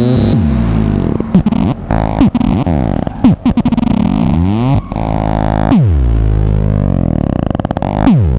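1978 Serge Paperface modular synthesizer being played live: a buzzing, many-toned drone whose pitch keeps sweeping, with several sharp downward swoops, a long falling sweep about six seconds in, and a fast stutter near the end.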